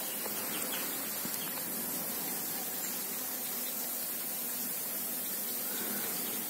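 Steady hiss of water forcing its way out of a burst underground water pipe.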